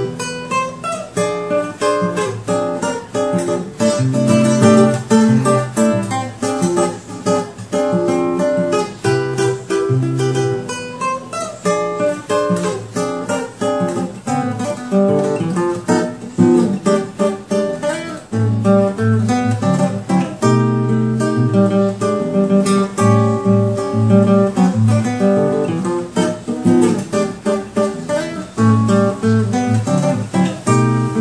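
Solo classical guitar, fingerpicked: chords and melody over plucked bass notes. About two-thirds of the way through it pauses briefly and moves into a different piece.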